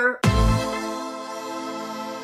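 Electronic musical sting for a section title: a sudden deep bass hit, then a sustained synth chord that slowly fades.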